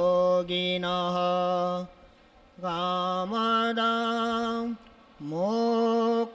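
A man chanting a Sanskrit devotional invocation in a slow melody, holding long notes that step and glide between pitches. He breaks off twice for breath, about two seconds and five seconds in.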